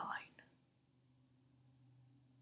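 A woman's spoken word trails off in the first half second, then near silence with a faint, steady low hum.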